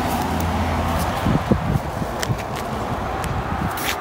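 A motor vehicle running nearby: a low engine hum, strongest in about the first second, over a steady noise of traffic. A few light clicks come through later.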